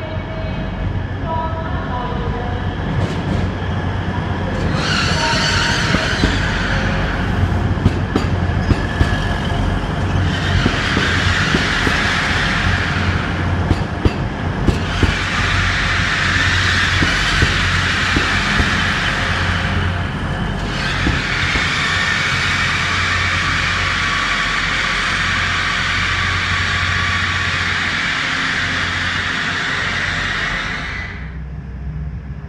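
Class 180 Adelante diesel multiple unit, with its underfloor Cummins diesel engines, pulling into a station under a trainshed roof and slowing to a stop. A steady low engine hum runs under wheel clicks over the rail joints, and a high hiss from the brakes comes and goes in long stretches.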